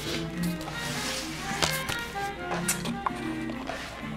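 Soft background music with held notes, over a few light taps and rustles of paper and chipboard pages being handled.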